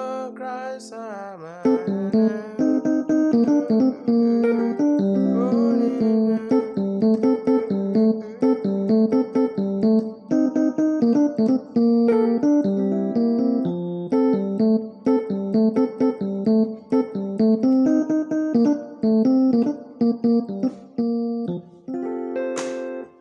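Electronic keyboard played with both hands in a piano voice, in F major. A held chord bends down in pitch in the first second and a half, then a steady run of melody notes over chords follows.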